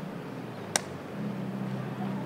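A single sharp, clap-like smack a little under a second in, then a steady low hum, like a vehicle running, that sets in just after a second in.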